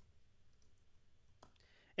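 Near silence with faint room tone and one short, faint click about one and a half seconds in.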